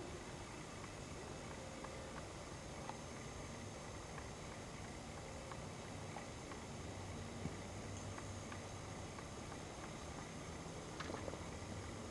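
Faint, steady background noise of an open-air night recording, with a low hum in the second half and a few light clicks.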